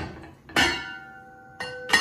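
Metal cookware clanking: a sharp clank about half a second in rings on with a clear tone for about a second, then two more knocks come near the end.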